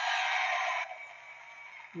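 Trading cards sliding against one another in the hands, a steady hiss for just under a second that then fades to a faint rub.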